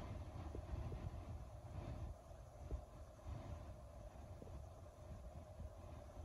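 Faint, steady low hum of a parked car's cabin with the engine not running, with a couple of soft clicks.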